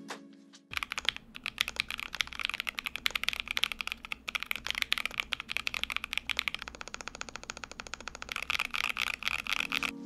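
Fast, continuous typing on a mechanical keyboard with stock TTC Heroic Panda tactile switches: a dense clatter of keystrokes starting just under a second in, with background music underneath.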